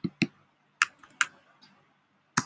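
Computer keyboard being typed on: about half a dozen separate, sharp key clicks, unevenly spaced.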